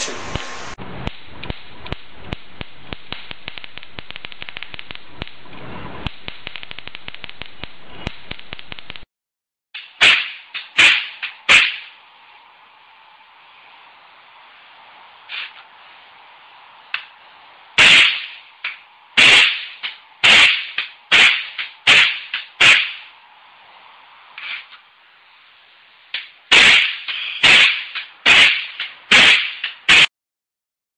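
Electric sparks snapping from a homemade high-voltage plasma spark ("water spark plug") circuit. It opens with a fast run of clicks for about nine seconds. After a short break there is a steady buzz with loud, sharp cracks, mostly in quick clusters of three to five.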